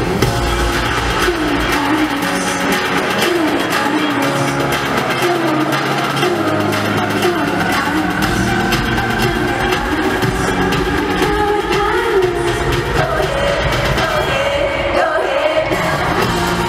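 A live pop song in concert: a woman sings the lead vocal into a microphone over the band's full backing. The bass thins out for a few seconds near the middle before the full mix returns.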